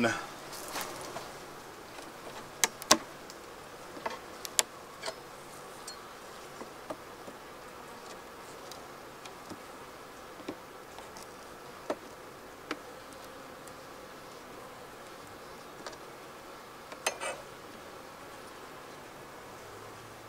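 Honeybees buzzing steadily in an opened hive box, with scattered sharp clicks and knocks of a metal hive tool prying wooden frames loose, the loudest a few seconds in and again near the end.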